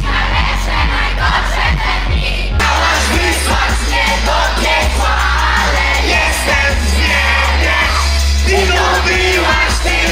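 Live pop song over a concert PA: a singer on microphone with the crowd singing along. A regular drum beat runs for the first couple of seconds, then about two and a half seconds in the sound switches abruptly to a steady deep bass under the singing.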